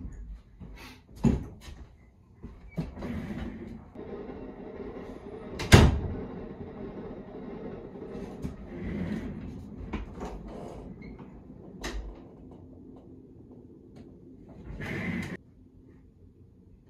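Door and furniture noises in a small bedroom as someone comes in and settles at a desk: a sharp bang about six seconds in, the loudest sound, another knock just after one second, scattered lighter knocks and clatters, and rustling movement between them.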